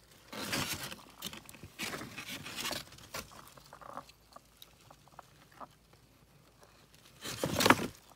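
Cardboard egg crates rustling and scraping as they are handled and shifted about, in a few short bursts with light taps between, and a louder scrape near the end.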